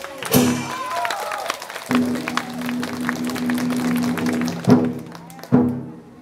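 Chinese opera martial-scene accompaniment: sharp gong and cymbal strikes with quick clacking percussion, and a single steady note held for a few seconds in the middle before more crashes near the end.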